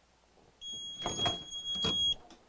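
Hotronix Fusion heat press timer giving one long, steady high beep that signals the end of the five-second press. Knocks and rattles from the press being released and its upper heater swung open come partway through.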